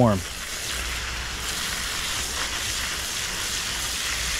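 Garden hose spraying water steadily into potted fig trees' soil, an even hiss.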